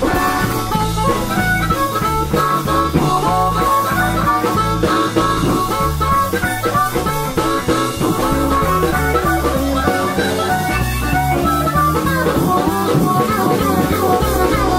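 Live blues band playing an instrumental passage on electric guitars, bass and drum kit, with a lead line of held, bending notes over a steady beat.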